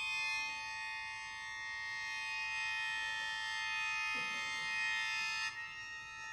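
Sheng (Chinese free-reed mouth organ) sustaining a held cluster chord of several steady reedy tones, the chord shifting about five and a half seconds in.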